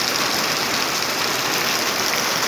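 Heavy rain pouring down in a steady, even hiss.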